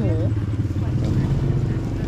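A small engine running with a steady low hum, under a brief spoken word at the start.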